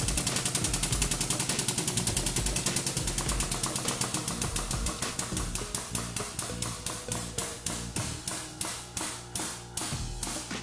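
Hydraulic press working under load: a rapid, even mechanical clicking that slows from several clicks a second to about two a second as the plate bears down and crushes the Cheerios.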